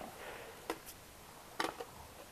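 A few short, sharp clicks over faint background hiss, the loudest about one and a half seconds in.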